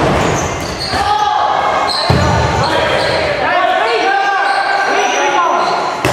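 Dodgeball players calling out and shouting over one another in a reverberant gymnasium, with a dodgeball thumping on the hard floor; the sharpest thump comes about two seconds in.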